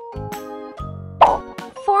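Light children's background music with a single cartoon "plop" sound effect a little over a second in, the loudest sound here, marking a character popping into the train.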